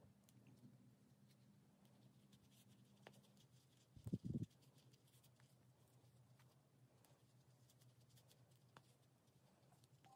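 Near silence: faint rustling and scratching of fingers packing hollow-fibre stuffing into a crocheted toy head, over a faint steady low hum. A brief dull thump about four seconds in.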